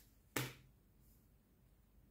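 A tarot card set down on the tabletop with one short, sharp snap about half a second in; otherwise near silence.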